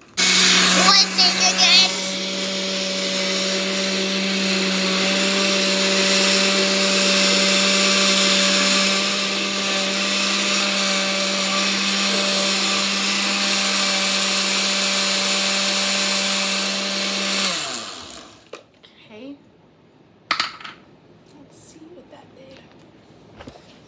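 Countertop blender running steadily while it blends a thick pink milkshake of berries, ice cream and milk, rougher and louder for the first two seconds. About seventeen seconds in it is switched off and its motor winds down with a falling pitch, followed by a single sharp knock.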